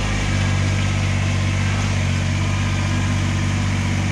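Kubota BX23S compact tractor's three-cylinder diesel engine running steadily as the tractor drives down off a trailer ramp; its note steps up and gets a little louder about a third of a second in.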